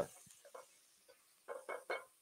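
Mostly quiet, then three short voice-like sounds in quick succession about a second and a half in.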